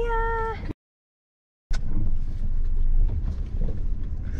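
A single steady pitched note with a brief rising start, held for under a second and cut off sharply into about a second of dead silence. The car's low engine and road noise in the cabin then comes back with a click.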